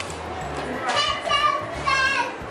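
Children's high-pitched voices calling out as they play, two short bursts of excited shouting about a second in and near the end, over background music in a large hall.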